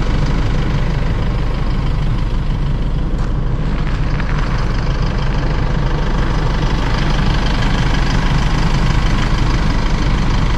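Vehicle engine idling steadily close by, a low continuous rumble with no revving.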